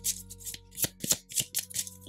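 Tarot deck being shuffled by hand: a run of quick, uneven card snaps, roughly four a second.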